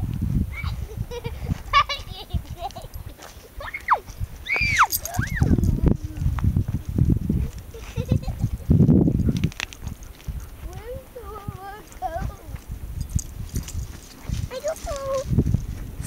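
Alaskan Malamute whining, with a few high rising-and-falling whines about five seconds in and longer wavering calls later on. Low bumping and rustling noise runs underneath.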